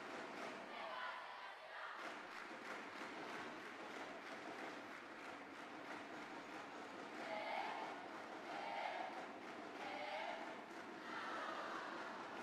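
Arena crowd noise: a steady hubbub of many voices, with a few louder shouts standing out in the second half.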